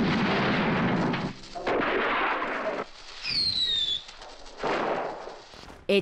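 Firecrackers and fireworks going off in a series of loud noisy bursts, loudest in the first second, with a falling whistle about three seconds in.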